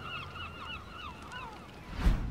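A large flock of seabirds calling all at once: a dense chatter of short, rising cries that thins out near the end, over a low steady hum.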